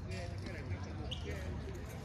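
Voices talking nearby, with a tennis ball bouncing a few times on the hard court.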